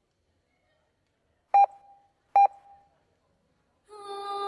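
Two short electronic beeps, one steady pitch each and the same tone both times, a bit under a second apart, with faint echo after each. Music starts right at the end.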